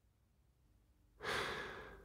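A single audible in-breath from a male narrator, taken just before he resumes speaking. It starts a little past halfway and fades toward the end.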